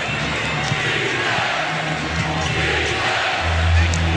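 Basketball arena game sound: steady crowd noise with a ball being dribbled on the hardwood court and scattered voices. A low steady drone joins near the end.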